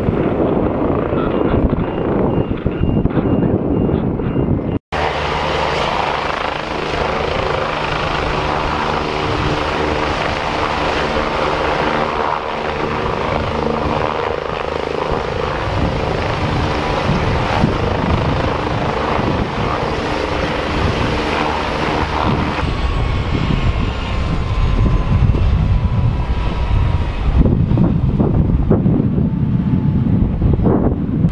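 Medical helicopter's turbine engine and rotor running steadily in flight, a thin high whine over the beat of the blades, growing louder near the end as it comes in. Wind on the microphone in the first few seconds.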